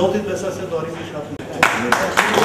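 Speech trails off, and about one and a half seconds in a group of people suddenly starts clapping, a dense patter of many hands.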